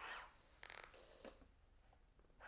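Faint, brief rasping sounds from a prosthetic hand moving: a short rasp at the start, a higher, zipper-like one just before a second in, then a light tick.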